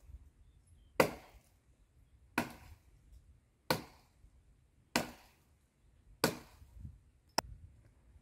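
Dead wood being chopped from a tree: five heavy chopping blows at an even pace, about 1.3 s apart, then a shorter, sharper crack near the end.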